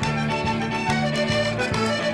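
Button accordion playing an instrumental folk tune with a steady beat, backed by a band.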